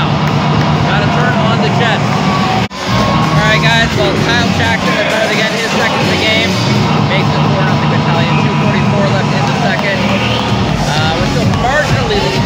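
Hockey arena crowd noise, with music over the public-address system and voices in the stands. The sound cuts out for an instant a little under three seconds in.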